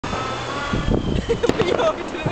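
People talking over a low background rumble, with a single sharp click about one and a half seconds in.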